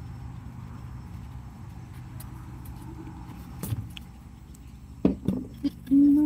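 Blue plastic fish drum, its lid and a dip net's handle being handled: a few scattered knocks and clatters, the loudest about five seconds in, over a low steady background hum.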